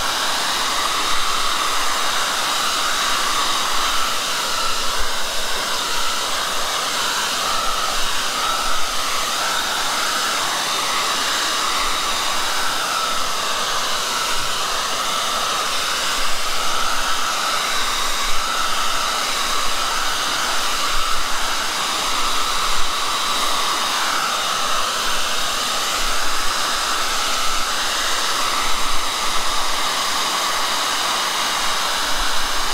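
Handheld hair dryer running steadily, blowing air over wet watercolour paper to dry it.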